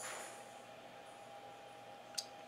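Faint, brief rustle of fingers handling a small RCA plug and its plastic shell right at the start, then quiet room tone with a faint steady tone.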